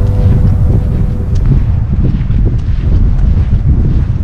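Wind buffeting an outdoor camera microphone: a loud, gusting low rumble.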